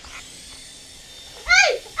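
Small toy quadcopter drone's motors running with a steady high whine. A child shouts "Hey!" near the end, louder than the whine.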